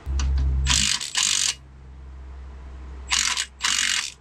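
A ratchet tool working the bolt of a 1997 Jeep Wrangler TJ's rear shock absorber, in two bursts of about a second each, one near the start and one near the end.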